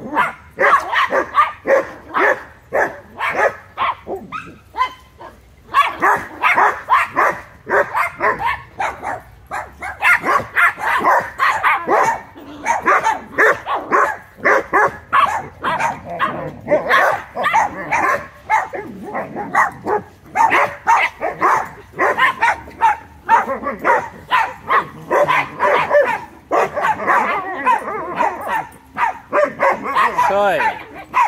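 Puppies barking and yipping in play, short high barks coming several times a second almost without a break, with brief lulls about five seconds in and again near twenty seconds.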